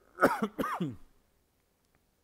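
A person coughs twice in quick succession within the first second; the coughs are loud and close to the microphone.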